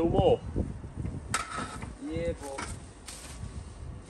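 Short snatches of indistinct speech, with a sharp knock about a second and a half in and a brief rustle near three seconds.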